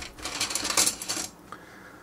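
Plastic roof pieces clattering against each other as one is picked out of a loose pile: a short run of light rattles and clicks lasting about a second, then it stops.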